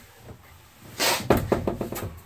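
Wooden cabinet door being handled in a small room: a brushing scuff about a second in, then a quick run of light knocks and clicks.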